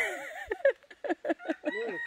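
Domestic chickens calling: a run of short clucks in the middle, with a rooster crowing.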